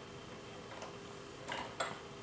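Plastic Lego Technic parts clicking as the crane's grab and its log are handled: a few faint ticks about three-quarters of a second in, then two sharper clicks a quarter second apart near the end.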